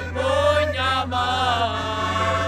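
Portuguese folk song sung to concertina accompaniment; the sung line ends near the end, leaving steady held notes.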